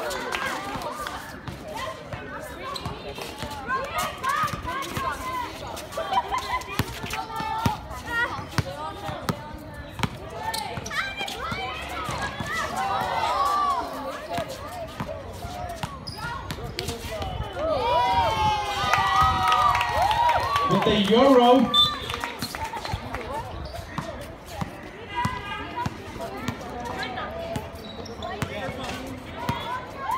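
Voices of players and spectators shouting and calling out during a basketball game, with a basketball bouncing on a hard outdoor court. The loudest, highest shouts come a little past the middle.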